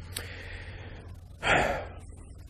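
A man's audible intake of breath about one and a half seconds in, over a low steady hum.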